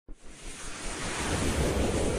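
Whoosh sound effect of an animated logo intro: a rush of noise that starts suddenly and swells steadily louder.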